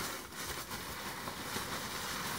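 Bubble wrap and packing peanuts rustling and crinkling as hands move through a shipping box, a steady crackly rustle.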